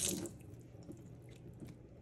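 Kitchen faucet water running into a stainless sink, cut off about a quarter second in, followed by faint drips and small ticks from the wet plastic drink holder.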